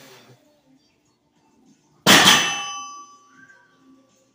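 A 435-lb loaded barbell set down from a deadlift lands on the floor about two seconds in with one loud metallic clang, the bar and plates ringing on and fading away over about a second.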